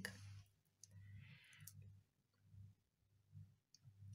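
Near silence with a few faint clicks of a beaded bracelet's beads and metal links being handled in the hand.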